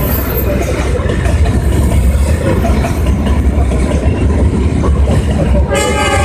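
Passenger coaches of a passing train running over the rails: a steady, loud low rumble with noise across the range. Near the end a steady horn-like tone with many overtones starts suddenly and holds.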